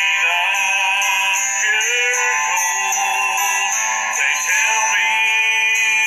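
A man singing a slow song, holding notes with vibrato, over instrumental accompaniment.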